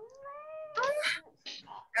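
A cat meowing: one drawn-out, upward-gliding call, followed by a short burst of voice.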